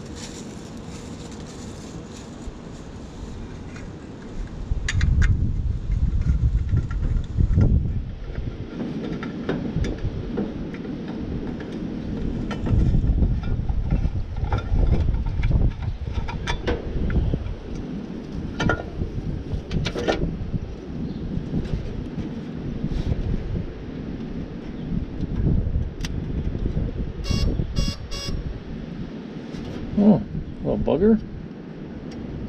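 Wind buffeting the microphone in an uneven low rumble, with scattered clicks and clanks of hand tools and parts against the truck's metal, and a quick run of sharp metallic rings near the end.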